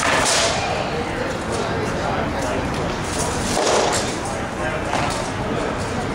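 Sparring weapons striking shields and armour in an armoured bout, the loudest blows coming right at the start and again a little before four seconds in, over a steady background of voices.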